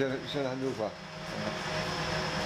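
Steady mechanical hum of bakery machinery, a constant drone with a few held tones, under a man's voice that stops about a second in.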